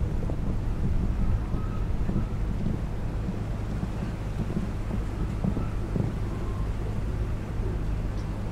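Wind buffeting the microphone: a steady low rumble, with faint background noise from the arena.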